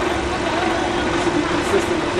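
Steady street traffic noise with a vehicle engine running nearby, a continuous low hum under an even wash of road noise.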